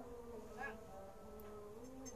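A young woman softly humming a tune with closed lips, holding long notes that shift gently in pitch.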